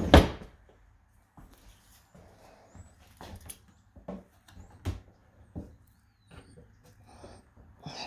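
Kitchen cabinet doors being tugged and handled: a sharp clack at the start, then scattered light knocks and clicks. The doors are sticking and won't open.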